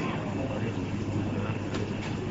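Steady low background hum and room noise, with faint voices underneath.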